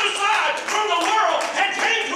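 A man's loud, impassioned preaching, too run-together for the words to be made out, over a run of sharp hand claps.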